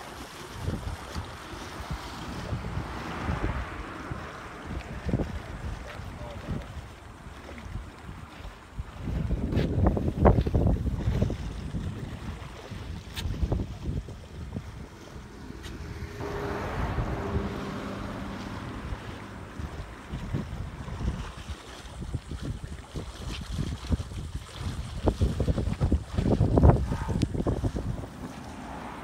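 Wind buffeting the microphone in uneven gusts, loudest about ten seconds in and again near the end.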